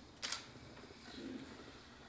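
A single short, sharp click with a hiss about a quarter second in, over quiet room tone.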